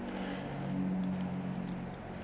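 A low steady hum that swells in the middle and then eases, with a couple of faint clicks of plastic toy parts being handled.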